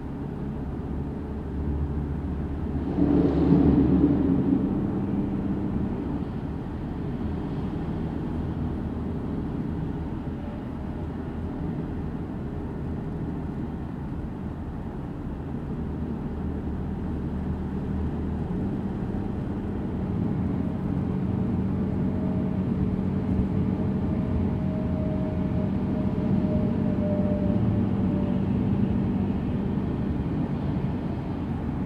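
A car driving on the road: a steady low rumble of road noise with a held engine drone underneath. About three seconds in, the sound swells briefly louder, then settles back to an even level.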